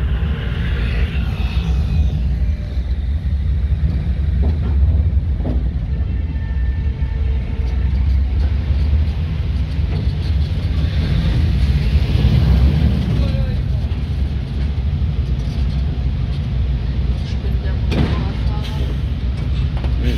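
Steady low rumble of a vehicle in motion, heard from on board, with a short knock near the end.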